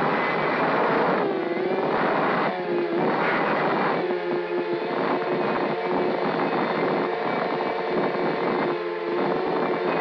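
A 210-size FPV mini quad's four Emax RS2205 2300kv brushless motors and 5040 props whining, heard from the onboard camera. The pitch dips and climbs again several times as the throttle changes.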